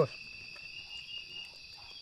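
Steady chorus of night insects, several shrill chirping trills at different high pitches overlapping without a break.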